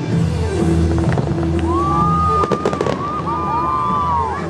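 Fireworks crackling, with a quick cluster of sharp pops about two and a half seconds in, over the show's music playing loudly.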